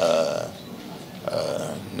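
A man's voice making two drawn-out hesitation sounds, like a held "ehh", between phrases: one at the start and another about a second and a half in.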